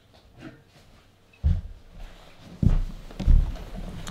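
Low thumps and bumps of a person sitting down at a desk and leaning on it: one about a second and a half in, then two heavier ones near the end, after a quiet start.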